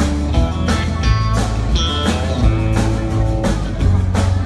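Live country band playing an instrumental passage: acoustic and electric guitars over bass and a drum kit keeping a steady beat.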